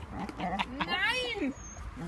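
A dog gives a short high-pitched whine about a second in, over a woman's voice.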